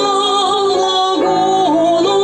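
Two women singing a classical duet in operatic style, holding long notes in harmony with vibrato. A low instrumental accompaniment comes in about halfway through.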